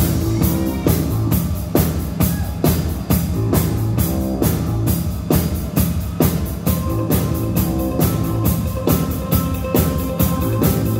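A rock band playing live: a drum kit keeping a steady beat under bass guitar and electric guitar, in an instrumental passage without vocals.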